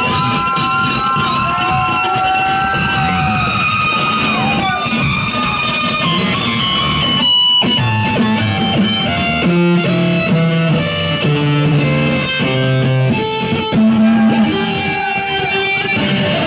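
Electric bass guitar solo played live: long held notes bending in pitch at first, a brief break about seven seconds in, then a run of quick single notes stepping up and down.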